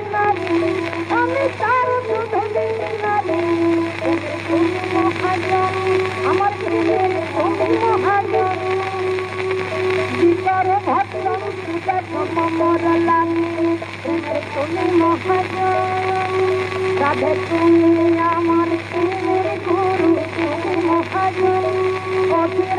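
Old recording of a Bengali devotional song (kirtan) playing: long held melodic notes with sliding ornaments, over a steady hiss and a low hum.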